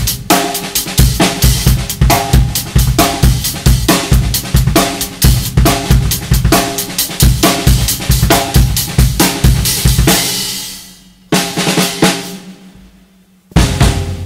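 Drum kit playing a steady funk beat on bass drum, snare and hi-hat. Past the middle the playing fades away, one last hit rings out and dies, and the beat starts again near the end.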